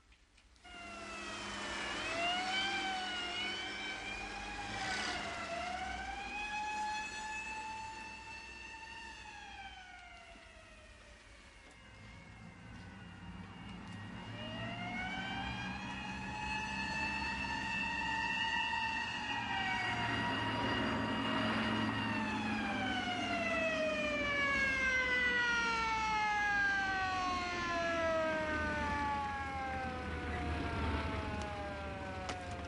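A mechanical wind-up siren wailing: it winds up with a brief waver, holds, and winds down, then winds up again, holds, and slowly winds down. A low rumble runs underneath.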